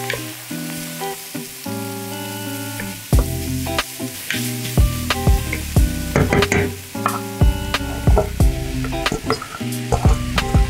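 Onions and guanciale sizzling in butter in a stainless steel pot as they are stirred with a wooden spatula. Background music with sustained keyboard chords plays over it, and a bass line and a steady beat come in about three seconds in.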